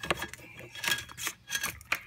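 Plastic wiring-harness connectors and wires being handled, giving a scatter of short clicks and rustles.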